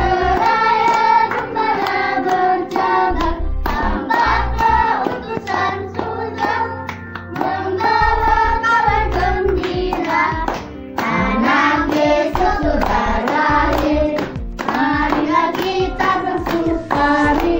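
A group of children singing a song together, phrase after phrase with brief breaths between.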